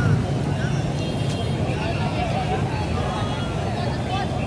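Steady low rumble of city street traffic, mostly motorbike engines, with scattered voices of a crowd of onlookers over it.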